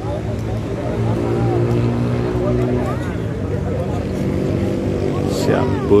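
A motor running steadily at a low, even pitch, with faint voices over it that grow louder near the end.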